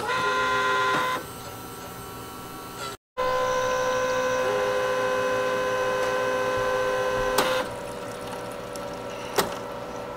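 Melitta Cafina XT4 coffee machine running its milk-system rinse cycle: a steady mechanical hum with a whine, dropping back after about a second, louder again for several seconds, then easing off about three-quarters through. A single sharp click near the end.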